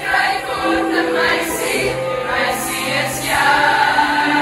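A large group of teenage girls singing a song together, many voices on sustained, shifting notes.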